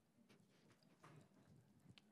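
Near silence, with faint, irregular footsteps of someone hurrying across the room.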